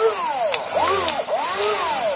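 Motors of a WLtoys 16800 RC excavator whining as the arm is worked back and forth to rock the raised body. The pitch rises and falls in three swells.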